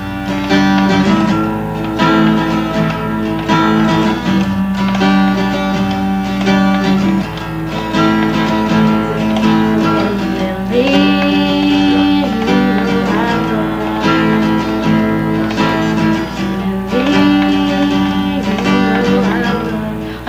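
Acoustic guitar being strummed and plucked, playing a tune with held notes.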